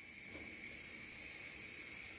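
Faint steady background hiss with a thin, even high whine running through it: room tone.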